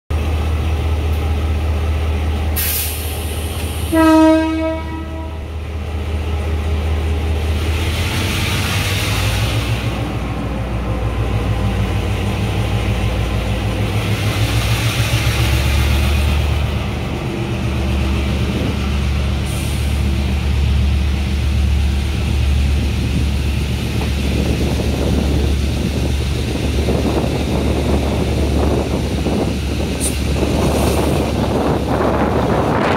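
Diesel-hauled passenger train pulling out, heard from inside a carriage: the locomotive's engine runs steadily, a short horn blast sounds about four seconds in, and the engine note and wheel rumble build as the train gathers speed near the end.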